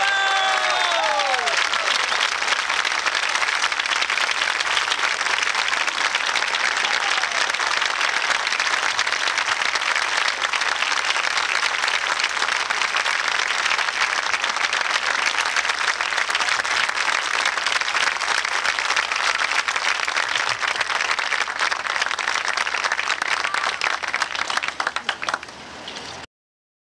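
Concert audience applauding steadily after a band performance ends, with a few falling cheers in the first couple of seconds. The applause thins near the end and is cut off abruptly.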